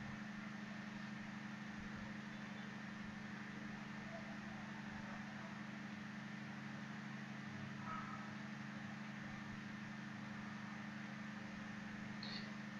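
Faint steady low hum over a light hiss: background equipment noise of a recording setup, with no other sound.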